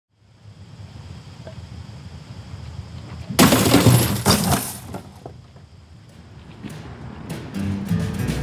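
The glass screen of an old tube television shattering: a sudden loud crash about three and a half seconds in, followed by about a second of breaking glass. Band music with acoustic instruments starts near the end.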